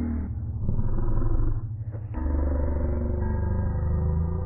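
A low, steady rumble in a cartoon soundtrack, dipping briefly about two seconds in and then returning.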